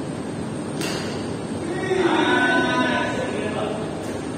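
A sharp smack of a badminton racket hitting the shuttlecock about a second in, then a drawn-out shout from a player lasting about a second, the loudest sound here, over the steady hubbub of the hall.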